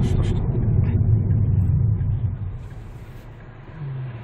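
Hyundai Avante MD's engine and road noise heard inside the cabin during a U-turn: a steady low rumble that fades noticeably about two seconds in.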